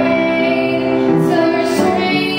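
A young woman singing a gospel solo into a handheld microphone, holding long notes with a few changes of pitch.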